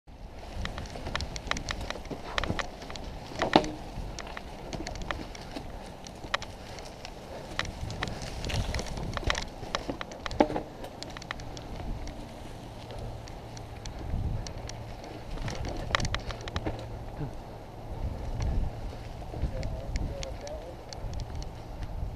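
A mountain bike ridden over a dirt trail covered in dry leaves and roots: tyres rolling through the leaves, the bike rattling with many sharp clicks and knocks, and wind rumbling on the camera microphone. Faint voices come in near the end.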